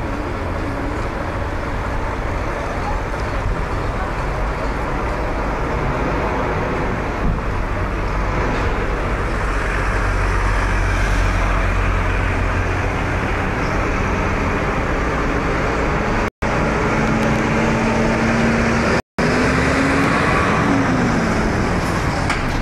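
Street traffic noise with the low rumble of idling heavy vehicle engines. Later on a steady engine tone comes in and glides down near the end. The sound cuts out twice for an instant.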